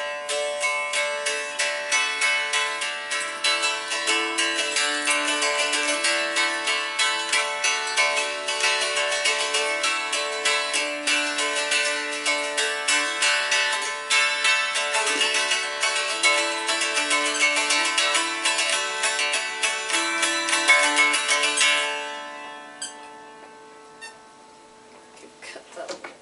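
Mountain dulcimer strummed rapidly with a quill in noter-drone style: a stepping melody over steady drone strings. The playing stops and rings away about two seconds before the end.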